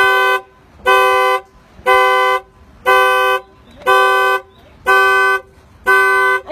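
2005 Infiniti G35's horn blaring in a car-alarm pattern: one steady-pitched honk about every second, each about half a second long. The alarm system is stuck on and won't stop.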